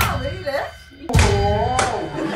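Two deep, heavy thuds: one right at the start and another about a second in. A woman's voice follows the second.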